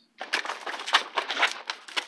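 Scuffle at close range: a fast, irregular run of rustles, knocks and clicks starting a moment in, as the two men grapple over the revolver and the recording phone is jostled.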